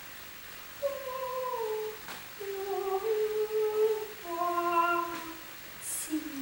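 A woman's voice sustaining long wordless notes, about four of them, each held a second or so and sliding gently down between pitches, with a short break near two seconds in.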